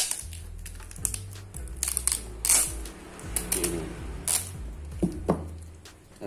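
Clear packing tape pressed onto a PVC card sheet and pulled off again in a few short crackling rips, lifting leftover bits of the protective plastic film so the sheet will stick. Background music with a steady low bass underneath.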